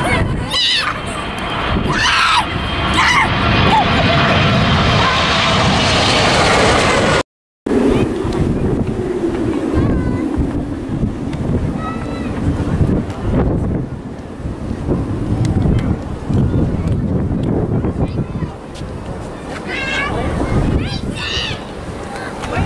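Boeing 777 passing low overhead on approach: loud rushing jet engine noise with a whine that slides down in pitch, over low wind rumble on the microphone. After a brief cut, an approaching Airbus A320-family airliner's engine noise comes in softer, under gusting wind.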